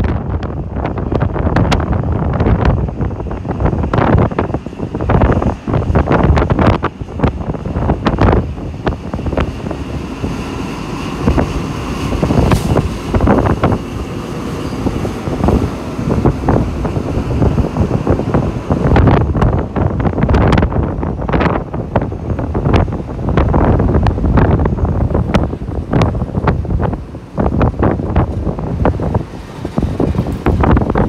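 Heavy wind buffeting the microphone in gusty crackles, over the low running sound of an XPT diesel passenger train moving past.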